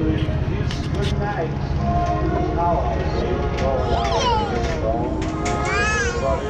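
High-pitched voices making wordless, sliding exclamations, one about two thirds of the way in and one rising near the end, over a steady low rumble.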